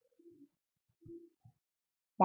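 Near silence, with a few faint, brief low murmurs.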